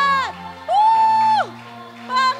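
Closing of a live worship song: a woman's held sung note dies away just after the start, then a second high held vocal note rises in about 0.7 s in and falls off around a second and a half, over a sustained keyboard chord.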